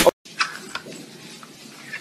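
A kitten giving one short mew near the end, over quiet room sound.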